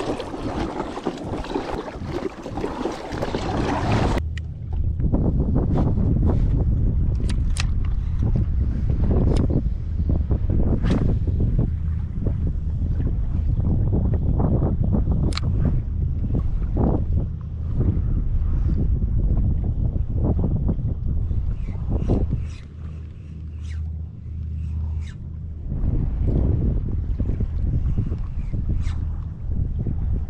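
Water splashing as a paddle board is paddled hard for the first few seconds, stopping abruptly. After that, wind rumbles on the microphone while small waves lap and slap against the inflatable board.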